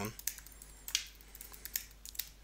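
Computer keyboard keys being typed, a run of short clicks about three or four a second as a password is entered.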